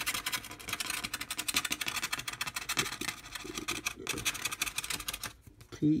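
Scratch-off lottery ticket being scratched: rapid back-and-forth strokes rasping off the coating, stopping about five seconds in.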